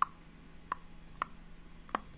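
Computer mouse clicking four times, single sharp clicks roughly half a second apart.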